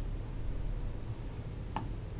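Drawing on an interactive whiteboard's screen: faint scratching strokes with one light tap near the end, over a low steady room hum.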